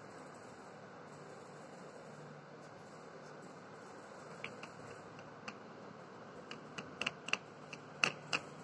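Paintbrush mixing paint in a plastic palette well: a run of light, irregular clicks and taps of the brush against the plastic, coming more often in the last few seconds, over a faint steady hiss.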